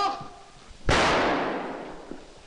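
A single pistol shot about a second in, sudden and loud, with a ringing tail that dies away over about a second.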